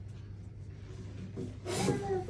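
Low steady hum, then near the end a short rubbing, scraping noise as a child sits down on a stool.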